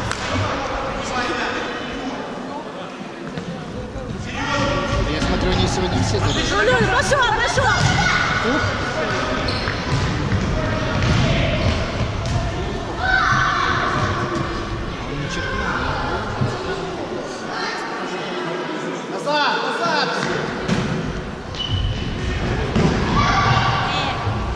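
Indoor futsal game in an echoing sports hall: voices calling and shouting across the court, with the thuds of the ball being kicked and bouncing on the floor.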